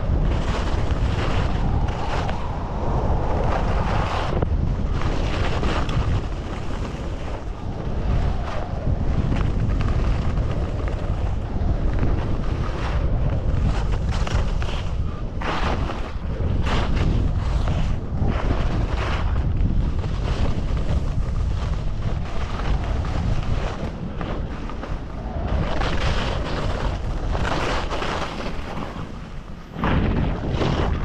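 Wind buffeting a GoPro microphone during a fast ski run, with skis scraping over hard-packed snow in short rasps. The rush eases near the end as the skier slows.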